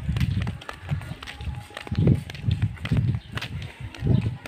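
Irregular low thuds and rumble, about two a second, on a handheld phone's microphone as the person walks: footfalls and handling of the phone.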